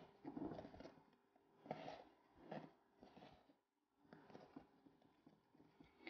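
Faint, irregular scraping and tapping of a wooden spoon stirring a clumpy confectioners' sugar mixture in a glass bowl.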